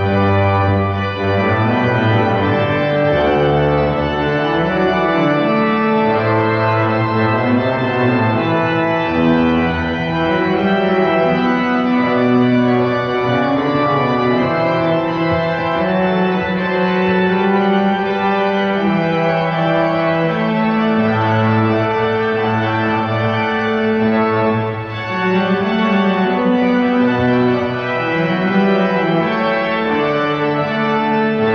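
Pipe organ playing slow, sustained chords over a bass line that moves in steady steps, with a short break in the phrase near the end.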